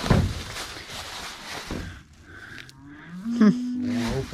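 Plastic shopping bags and garbage bags rustling as items are rummaged out of them. Near the end comes a loud, drawn-out low call that rises in pitch and then holds steady.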